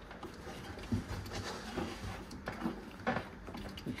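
Handling noises from a white plastic thermostatic actuator being unscrewed by hand from an underfloor-heating manifold valve: a few short, soft knocks and clicks spread across the seconds, the clearest about a second in and near the end.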